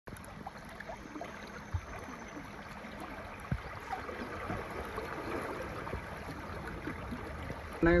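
River water rushing steadily over a rocky riffle, with two faint knocks in the first half. A man's voice begins right at the end.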